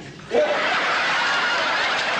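Studio audience breaking into loud laughter about a third of a second in, after a quieter line of dialogue.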